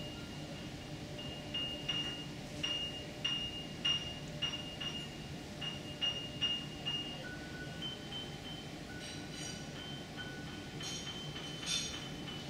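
Faint background music: a run of high, chime-like mallet notes, about one and a half a second, whose pitch shifts partway through. It plays over a steady low room hum.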